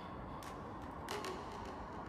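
Low, steady background noise with a couple of faint short clicks, no speech.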